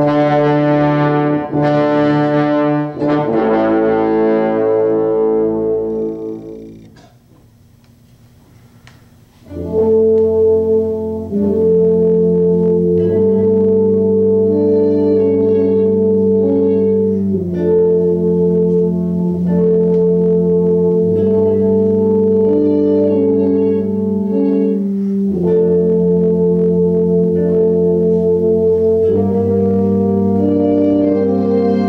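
A school band with brass, trombones among it, playing sustained chords: two loud chords at the start, the second fading out over a few seconds, a short silence, then a long run of held chords that change every few seconds.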